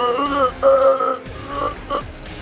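Background music with a man's voice drawn out in bending pitched phrases over it.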